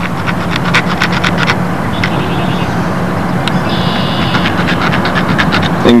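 Metal tool scraping in quick short strokes over an aluminium model-engine header pipe, roughening its surface so it will grip. A steady low hum runs underneath, with two brief high whines in the middle.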